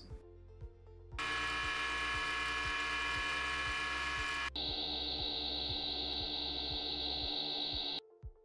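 Recorded engine crank noise, a steady whirring noise with several strong tones, starts about a second in. Midway it cuts abruptly to the same noise heard through a 3D-printed acoustic-filter earmuff, its tonal peaks suppressed. Faint background music with a steady beat runs underneath.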